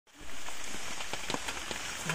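Steady rain falling, with many individual raindrops ticking sharply close by.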